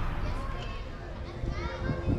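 Indistinct voices of players and onlookers calling out around a baseball field, a few shouts rising near the end.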